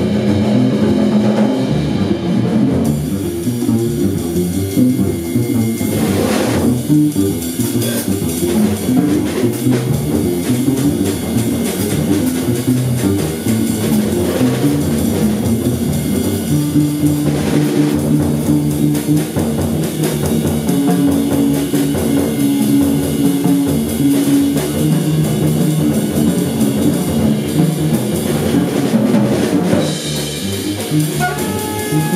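Live improvised jazz with a drum kit played busily, cymbals included, under double bass notes, some of them held for a couple of seconds in the middle.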